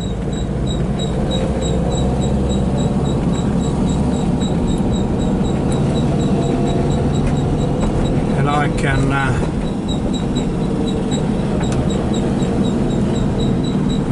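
The air-cooled flat-four engine of a 1977 Volkswagen Type 2 campervan running steadily as it drives at low speed, with a low drone and road noise. A faint, evenly spaced ticking runs along with it.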